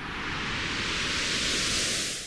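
A whoosh sound effect of rushing noise for a logo animation, swelling louder and brighter as it goes.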